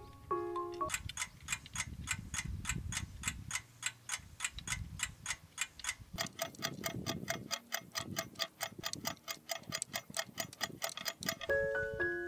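Ticking clock sound effect, an even run of about four ticks a second, with a second, higher tick joining in about halfway through. Short piano notes play at the very start and again near the end.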